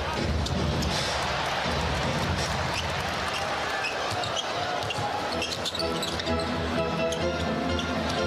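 Basketball game sound in an arena: steady crowd noise with a ball bouncing on the court and music playing underneath.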